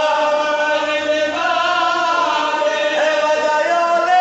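Male voices chanting a Shia mourning elegy through a microphone, in long held notes that slide from one pitch to the next.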